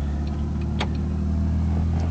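A 1966 Ford Falcon's engine idling steadily, with the light clicking of the turn-signal flasher ticking over it.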